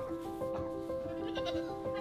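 Soft background music of long held notes that change pitch about once a second.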